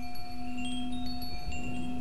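Background music of high chimes ringing one after another over a low, steady held drone.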